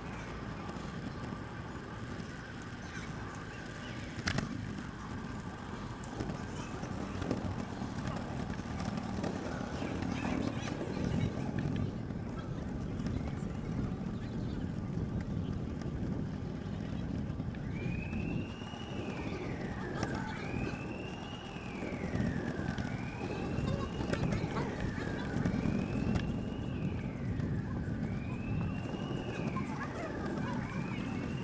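Xootr kick scooter rolling over park pavement on its small wheels: a steady low rumble with a few sharp clicks. From a little past halfway, a whine repeats about every two and a half seconds, each time jumping up in pitch and then falling.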